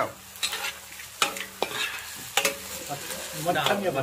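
Metal spatula stirring and scraping greens and egg around a wok, over a faint steady sizzle of frying, with a few sharp knocks on the wok.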